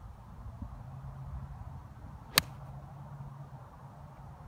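A golf iron striking a ball off the turf: one sharp, crisp click about two and a half seconds in.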